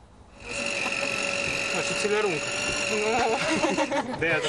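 Egg vending machine's electric motor giving a steady whine that starts about half a second in and stops just before the end, with voices of people standing around it.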